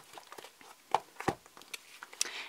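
A paper disc-bound planner being handled and shifted on a tabletop: a few sharp knocks and clicks with soft paper rustles between.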